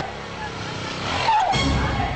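Film sound effect: a rushing noise that swells into a deep boom about one and a half seconds in.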